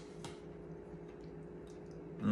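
A metal spoon clicks once against a ceramic soup bowl about a quarter second in as soup is scooped, followed by a few faint small eating ticks. A steady low room hum runs underneath.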